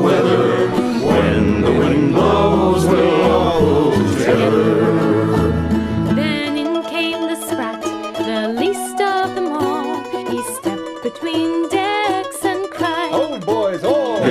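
Instrumental break in a folk sea-shanty recording, with plucked strings prominent. About six seconds in, the bass drops out and a lighter, higher melody carries on alone.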